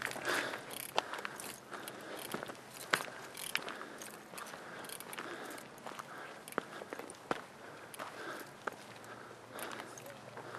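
Footsteps on loose rocky gravel: an irregular series of crunches and sharp clicks as someone walks over the stony trail.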